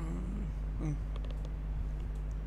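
A man's voice giving two short wordless sounds, like a brief 'hmm', the first bending up and down in pitch and the second shorter a little under a second in, with a few faint clicks after, over a steady low hum.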